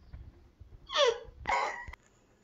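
A toddler's high-pitched voice: two short vocal sounds about half a second apart, the first sliding down in pitch, the second held level and cut off abruptly. Low rumbling handling noise runs under the first half.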